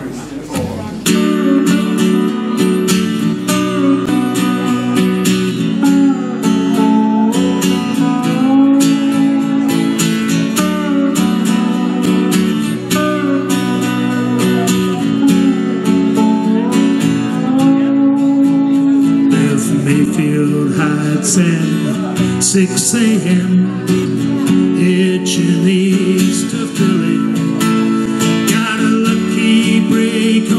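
Strummed acoustic guitar with a steel guitar playing sliding melody lines: a country song starting up about a second in.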